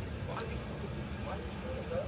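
Faint voice coming from a mobile phone on speakerphone, in short broken phrases, over a steady low rumble of outdoor background noise. A run of short, high chirps repeats in the background.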